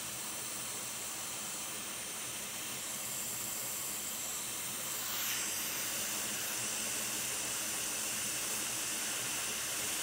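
Quick 861DW hot air rework station blowing a steady hiss of hot air while it desolders a small chip from a MacBook logic board; the hiss grows a little louder about halfway through.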